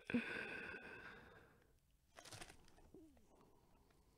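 Faint crinkling of a clear plastic sleeve as a graded card slab slides out of it. It opens with a steady squeak that fades over about a second and a half, and a few short crackles follow about two seconds in.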